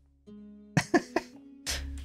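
A man's short laugh: a few breathy chuckles about a second in, over quiet background music.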